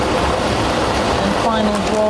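Plastic lottery balls tumbling in a clear three-chamber draw machine, a continuous dense rattle of balls against each other and the machine's walls.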